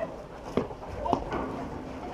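Spectators' voices calling out faintly around a softball field, with two sharp knocks about half a second apart near the middle.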